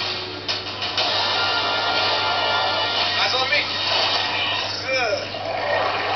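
Movie trailer soundtrack playing through a computer monitor's small speakers: music under a dense, noisy wash of sound effects, with a few brief snatches of voices.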